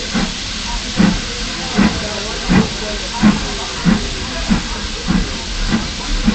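Steam locomotive chuffing: regular exhaust beats, about nine of them, coming slightly quicker as it goes, over a constant steam hiss.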